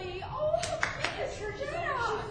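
Indistinct voices of people talking and chuckling in a reverberant church. Three short, sharp claps or knocks come in quick succession about half a second to a second in.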